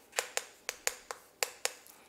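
Chalk writing on a chalkboard: a quick, irregular run of sharp taps, about five a second.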